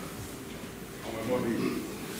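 A man speaking; the words are not made out.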